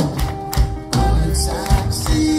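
Live reggae band music in an instrumental stretch: a steady bass line and held chords under sharp drum hits.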